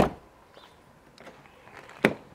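Range Rover Evoque rear door being shut, a single solid thump right at the start, then quiet. Another thump follows near the very end.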